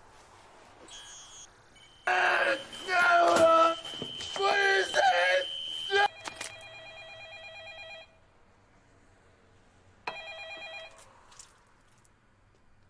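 Desk telephone ringing with an electronic tone: one ring of about two seconds, then a shorter ring a couple of seconds later. Before the rings, a louder wavering voice-like sound lasts about four seconds.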